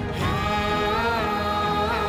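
Slow dramatic background music of long held notes, a new phrase swelling in about a quarter second in.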